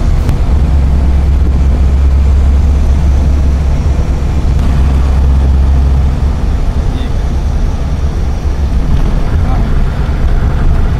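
Engine and road noise heard inside the cab of a vehicle driving along a highway: a loud, steady low rumble that eases a little about six seconds in.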